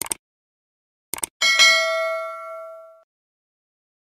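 Sound effect for a subscribe-button animation: a short mouse click, then a quick pair of clicks about a second in, followed by a bright bell ding that rings out and fades over about a second and a half, the notification-bell chime.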